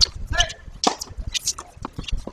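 Tennis ball bounced several times on a hard court before a serve, each bounce a sharp knock, with voices in the background.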